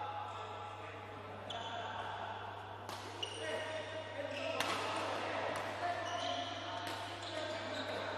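Badminton racket strikes on a shuttlecock during a rally, about four sharp hits a second or so apart, echoing in a large hall.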